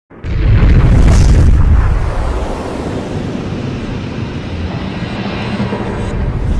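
Explosion sound effect: a loud boom just after the start, then a deep rumble that carries on at a lower level.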